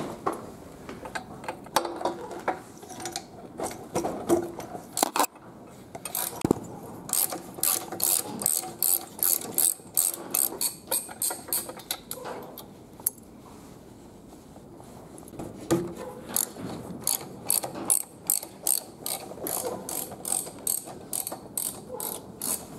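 Ratchet wrench clicking as spark plugs are turned out of an air-cooled aircraft engine's cylinder heads, with a few handling knocks at first, then two long runs of quick, even clicks.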